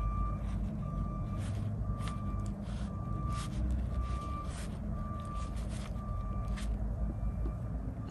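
A vehicle's backup alarm beeping at one steady pitch about once a second, over a continuous low engine rumble.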